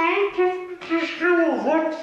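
A person's high-pitched, sing-song voice drawing out several wordless syllables that slide up and down in pitch, with a downward slide near the end.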